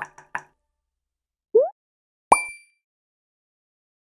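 Logo-ident sound effects: a couple of soft clicks, a short rising boop about one and a half seconds in, and a sharp pop with a bright ringing ping a little after two seconds.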